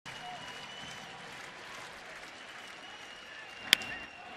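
Steady murmur of a ballpark crowd, then a single sharp crack of a wooden bat on the baseball near the end. The hitter is jammed on the pitch and bloops it toward left field.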